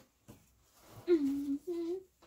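A woman humming two held notes, the second a little higher, starting about a second in.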